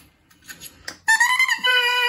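Handmade cane oboe reed crowed on its own after a few faint handling clicks: a reedy, pitched squawk starts about a second in and drops to a lower pitch partway through. It is a low crow, which she links to the reed being held too strongly open by its heavy spine and rails.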